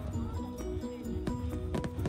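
Music with a beat: held melodic notes that step from pitch to pitch over regular percussion strokes.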